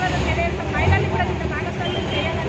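A person's voice speaking over a steady low rumble.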